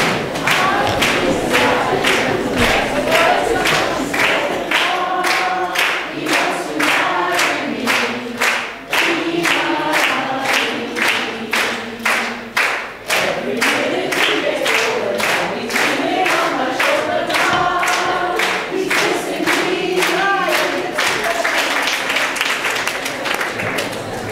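A large room full of people singing together, unaccompanied, with a steady beat of sharp hits, about two to three a second, under the singing. The singing stops near the end.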